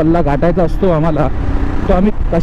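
A man's voice over the steady engine and wind rumble of a motorcycle riding in traffic; the voice breaks off for about half a second past the middle, leaving only the motorcycle noise, then comes back near the end.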